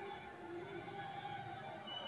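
Faint steady background noise with a few faint thin tones in it.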